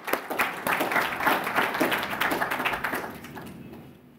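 Audience applause: many hands clapping densely, then dying away over the last second or so.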